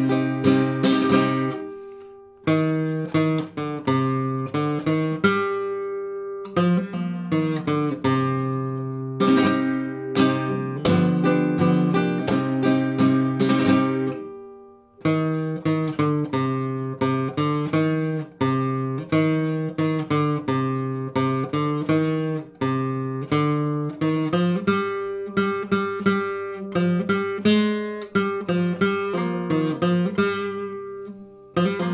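Flamenco guitar playing a sevillanas at slow practice speed: strummed A minor and E7 chords with sharp attacks. The chords let ring and die away briefly about two seconds in and again about halfway through.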